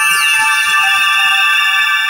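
Electronic title jingle: several held synth tones sounding together, with high pitch sweeps rising and falling over them.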